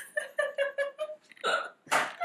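A woman laughing: a quick run of short, evenly spaced 'ha' pulses over about a second, then a sharp breath about one and a half seconds in.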